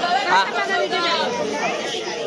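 Several people talking at once: overlapping conversational chatter.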